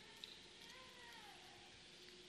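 Near silence: room tone, with one faint short tone that rises and then falls in pitch around the middle.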